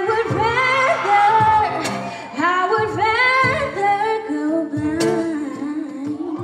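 Live pop song sung by a small vocal group to acoustic guitar accompaniment, with a few sharp percussive hits.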